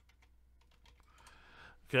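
Computer keyboard typing: a quick run of faint key clicks as a line of text is typed.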